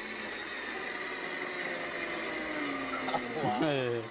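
Countertop blender motor running at speed, its pitch falling over the last second or so as it is turned down, then cutting off sharply.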